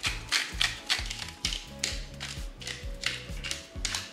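Hand-twisted salt and pepper mills grinding over a salad bowl, a run of quick ratcheting clicks, over background music with a steady beat.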